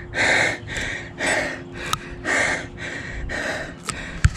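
A runner breathing hard straight after an all-out 1 km effort: heavy gasping breaths about one a second, with smaller breaths between. A brief click about two seconds in.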